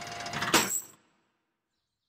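Cartoon sound effect of a crane's chain running down a drain shaft: a rattling slide that builds to a sharp hit about half a second in, as the chain runs out of length, then cuts off before a second into dead silence.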